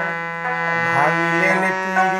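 A man singing a Bhawaiya folk song over a steady held accompaniment note, his voice rising about a second in. A long-necked lute, a dotara, is played along with it.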